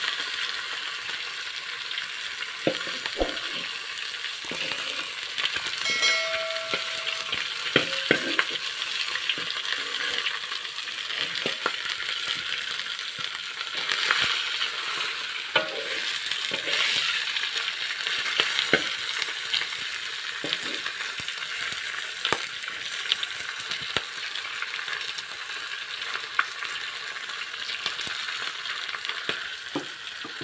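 Whole fish frying in oil in a wok: a steady sizzle, broken by scattered clicks and scrapes of a metal spatula against the pan as the fish is turned.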